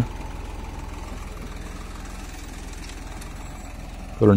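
Tractor diesel engine running steadily under load as it drives a PTO rotavator through the soil, with an even low firing pulse.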